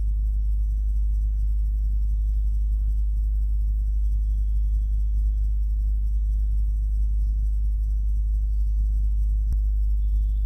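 A steady, loud low hum with no change throughout, the kind of electrical or microphone hum that sits under a voice-over recording. One faint click comes near the end.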